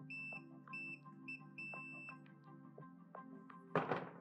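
A digital multimeter's continuity beeper sounds four short high beeps, the last one longest, each a sign that a pressed handlebar-switch button is closing the circuit between the probed wires. Near the end there is a brief loud burst of noise. Background music plays throughout.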